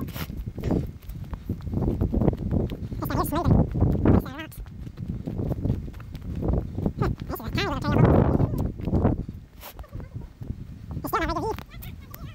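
Footsteps crunching and scuffing through dry fallen leaves and over rocks on a woodland trail, irregular throughout. A laugh comes about three and a half seconds in, with other short vocal sounds around eight seconds and near the end.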